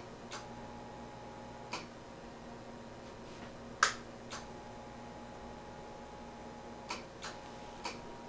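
Handling clicks from the plate tuning knob of a Drake L4B linear amplifier being turned to retune it, about seven short sharp clicks, the loudest about four seconds in, over a faint steady hum.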